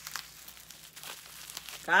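Crinkling and rustling of the wrapping around sports card packs as it is handled, a scatter of faint crackles.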